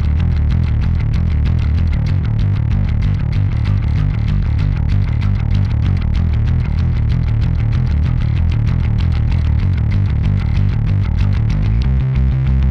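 Electric bass played through a Lusithand Ground & Pound distortion pedal, a continuous run of distorted, heavy low notes.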